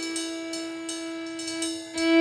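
A live Cajun band playing, with fiddle, button accordion, bass guitar and drum kit. One long note is held through these seconds over light cymbal and hi-hat taps.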